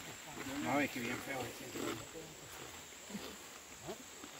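Men's voices, indistinct, with one drawn-out call rising in pitch about a second in and quieter talk after it.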